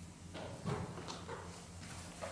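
Footsteps of a person walking across a hard floor: several faint, unevenly spaced steps over a steady low hum.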